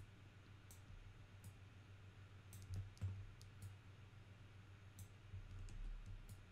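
Faint, irregular clicks of a computer mouse as it is clicked and dragged to sculpt, about a dozen sharp ticks over a low steady hum.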